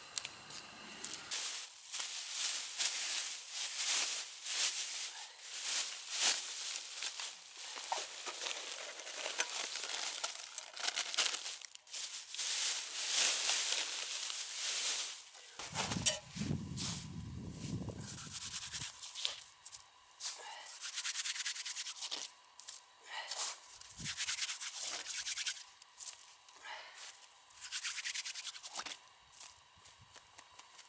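Dry grass being torn and cut by hand with a knife for tinder: repeated rustling, tearing strokes through the first half. A low rumble follows midway for about two seconds, then lighter crunching and scraping of snow being scooped up beside a small steel pot.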